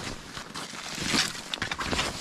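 Rustling and handling noise of gloves, clothing and snow as a person moves and takes up an axe, with a brief swish about a second in and a few faint knocks near the end.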